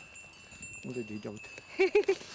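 A person's voice in short bursts about a second in and again, louder, near the end, with a faint steady high-pitched ringing tone behind that stops shortly before the end.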